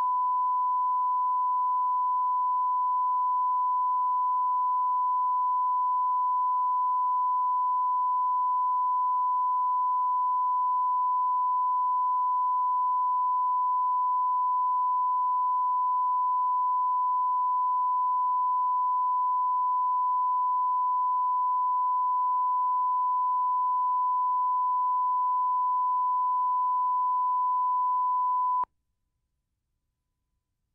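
Steady single-pitch reference test tone, the level line-up tone recorded with colour bars at the head of a broadcast videotape. It holds at one pitch and level and cuts off abruptly near the end.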